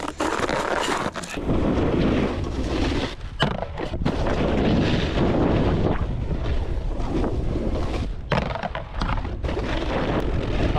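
Snowboard scraping and carving over packed, tracked-up groomed snow, with wind on the microphone. The scraping breaks off briefly a few times.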